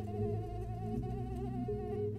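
Mosquito in flight close by, a thin high whine that wobbles up and down in pitch, over a low steady hum.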